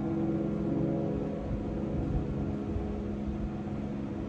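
A chord on an acoustic piano dying away slowly, its notes still ringing under held keys.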